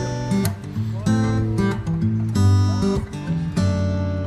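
Background music of a strummed acoustic guitar, its chords changing every second or so.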